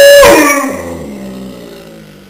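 Alaskan Malamute giving a loud howling 'woo': a held note that slides down in pitch about a third of a second in and fades over the next second and a half.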